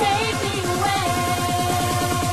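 Bounce (donk) style electronic dance music from a club DJ mix: a fast, pulsing bass pattern under a synth lead that settles into a held note about a second in.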